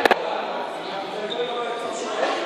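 A single sharp impact on a hard gym floor or surface about a split second in, over the steady chatter of a group of students.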